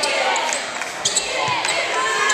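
A live basketball game on a hardwood court: a basketball bouncing a few times and short sneaker squeaks, over the voices of the arena crowd.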